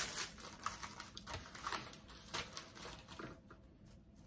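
Tissue paper rustling and crinkling in irregular handfuls as it is handled for packing. It thins out toward the end.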